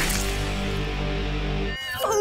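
Short electric-guitar music sting: a loud held chord that cuts off suddenly near the end.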